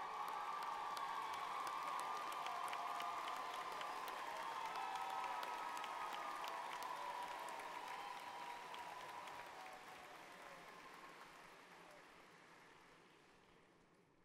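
Large audience applauding with cheering voices among the clapping. It holds steady for about eight seconds, then fades away.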